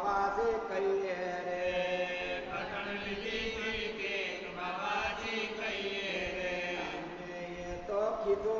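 Devotional chanting by voices, in long held notes that rise and fall in pitch.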